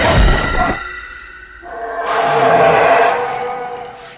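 Horror-film soundtrack effects: a sudden loud noise burst, then a rushing swell with a held tone that rises about two seconds in and fades away.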